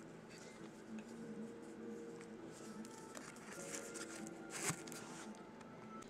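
Faint music in the background, over quiet rustling of a cable being handled. About three-quarters of the way in comes one short, sharp rip as a hook-and-loop (Velcro) cable tie is pulled open.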